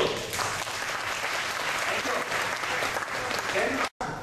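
Audience applauding, a steady clapping that cuts off suddenly near the end.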